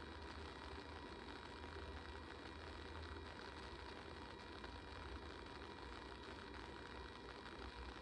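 Quiet room tone: a steady low hum with a faint even hiss, and no distinct events.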